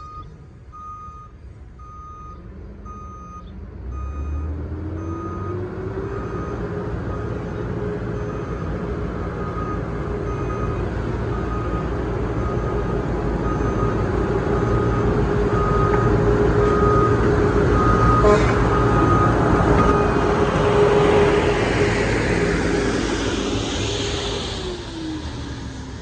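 Hi-rail dump truck's diesel engine running as it travels along the railroad track, its backup alarm beeping steadily about once a second. The engine note rises around four to six seconds in, grows louder as the truck passes close, and drops in pitch near the end.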